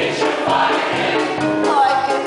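A stage musical number: a mixed chorus singing together over instrumental accompaniment.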